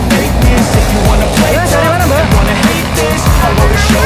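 Background music with a steady beat and a vocal line.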